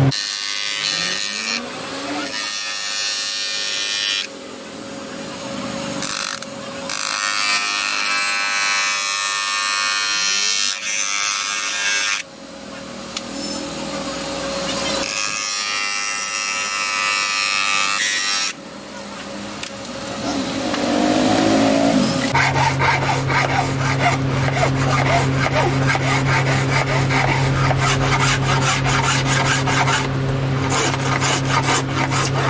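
A plastic car tail-light cover being worked: rasping and rubbing against a motor-driven disc and hand tools. In the later part a motor hums steadily under quick, even rubbing strokes.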